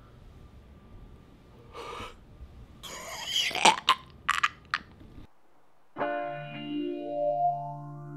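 A man makes a few loud throat and mouth noises near the middle, then the sound cuts to dead silence. About six seconds in, a Les Paul-style electric guitar starts playing held notes through effects, with one note gliding upward.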